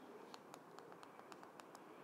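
Near silence with about seven faint, short clicks: fingers pressing and handling the small plastic GTeng wrist FPV screen, cycling its channels with the side button.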